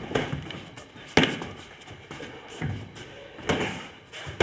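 Boxing gloves smacking during sparring: four sharp hits about a second apart, the loudest a little over a second in.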